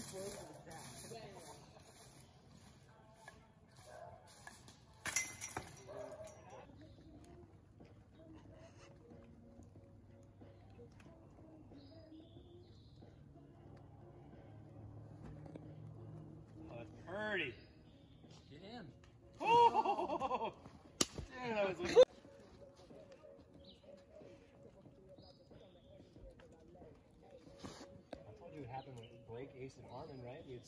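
A disc hitting the chains of a disc golf basket about five seconds in: a sudden metallic crash with a short ringing tail. Brief voices follow later, with two sharp clicks near the end of the talk.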